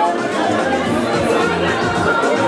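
Dance music with a bass line playing under loud crowd chatter and voices.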